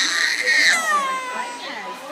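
An infant wailing in distress: one loud, high cry that drops in pitch and fades away in the second half.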